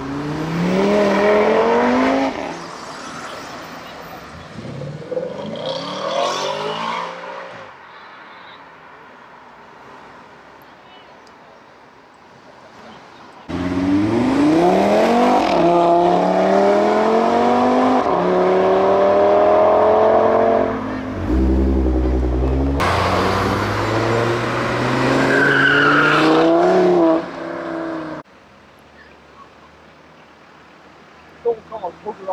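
An Audi RS3's turbocharged five-cylinder engine accelerating hard, its note climbing and then fading as it pulls away. Nearly halfway through, loud engine notes from other cars accelerating hard through the gears start abruptly, each rising in pitch, and they cut off sharply near the end.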